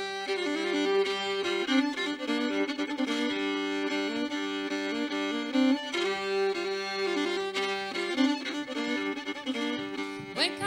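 An old-time string band playing an instrumental passage: a bowed fiddle carries the melody over banjo and acoustic guitar accompaniment.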